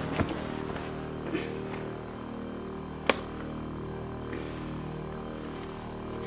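Soft, sustained background music with held tones, over a few light rustles and knocks and one sharp click about three seconds in.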